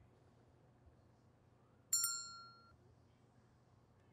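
Smartphone text-message notification ding: a single bright chime about two seconds in, ringing out and fading in under a second, announcing an incoming message.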